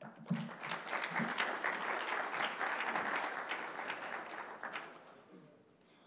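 Audience applauding, a dense clapping that dies away about five seconds in.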